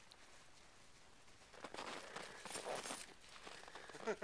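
Snow crunching and rustling in a dense run of crackles. It starts about a second and a half in and is loudest just before three seconds.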